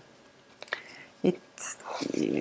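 A pause in a woman's talk: quiet room tone with a couple of soft mouth clicks and a breath, then a single short spoken word.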